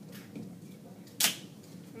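A dry-erase marker making one quick mark on a whiteboard: a single short, sharp scratch a little over a second in, over a low room hum.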